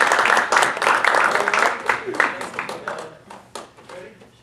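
Audience applauding, with voices mixed in; the clapping thins out and dies away near the end.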